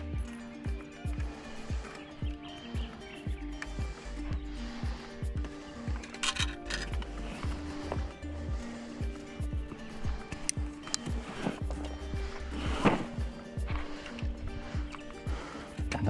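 Background music with a steady beat, a bass line and held notes.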